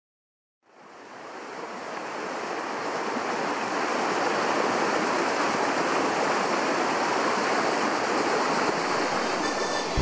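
Rushing water of a small rocky stream tumbling over a cascade, a steady hiss fading in about half a second in and rising over a few seconds before holding level.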